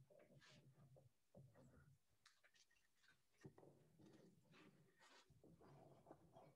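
Near silence, with faint scattered handling noises as a wooden bowl blank is moved about on a workbench.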